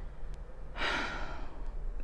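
A woman's single audible sigh, one breathy breath lasting about half a second near the middle.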